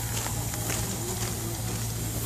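SNCF 140 C 38 steam locomotive standing at the platform: a steady low hum under an even hiss, with a few faint clicks.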